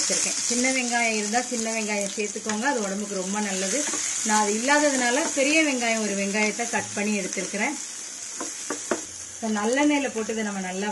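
Diced red onions sizzling in hot oil in a pan, a steady hiss that starts as they go in, with a person talking over it for most of the time.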